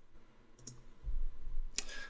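A few faint clicks in a small room: a light click about two-thirds of a second in and a louder one near the end, with a low rumble between them.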